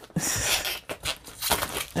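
Cardboard scraping and squeaking as a tightly packed diamond-painting kit is forced out of its snug box, in two bouts: one starting just after the start, another near the end.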